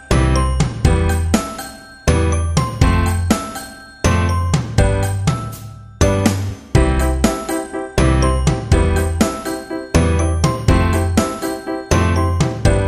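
Background music: a light tune over a steady beat with a low bass, its phrase repeating every two seconds.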